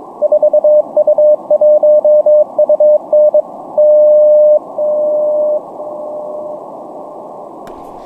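Morse code from the New York NCDXF/IARU beacon (4U1UN) received on 14.100 MHz on an Elecraft K4 in CW mode: the call sign keyed as a steady tone over band hiss, then four long dashes, each weaker than the last, at 100 W, 10 W, 1 W and 100 mW. The 10 W dash is loud and clear, the 1 W dash can be heard if you listen carefully, and the 100 mW dash is barely above the noise.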